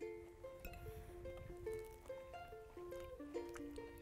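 Light background music: a gentle melody of short plucked notes, one after another.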